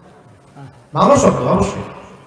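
A man's voice preaching into a microphone, resuming about a second in after a short pause.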